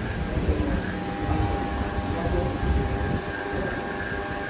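Electric hair clippers buzzing steadily as they trim a man's beard and neckline, over an uneven low rumble.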